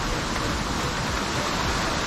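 Small mountain stream and waterfall rushing over rocks: a steady, even rush of water.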